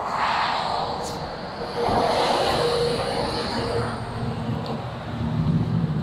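Steady rumble and hiss of motor-vehicle noise, with a faint hum that comes and goes in the middle.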